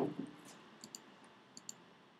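A few faint, scattered computer keyboard key clicks.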